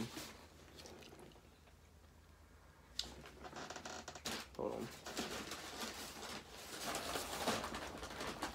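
Faint handling noise from someone eating and rummaging. Irregular small clicks, rustles and crunches start about three seconds in, after a nearly quiet start.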